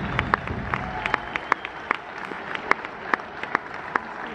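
Crowd applauding in a large hall. Individual hand claps stand out at several a second and thin out a little after about a second.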